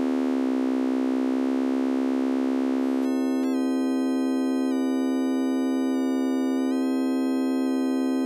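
Sustained single-note tone from the Alchemy additive synthesizer: a saw wave rebuilt from stacked sine-wave harmonics, held on one steady pitch while its harmonic stretch controls are changed. For about the first three seconds the overtones are stretched down out of tune with the note and blur together. Then they snap back into clean, evenly spaced overtones, and the upper ones shift in pitch in small steps twice.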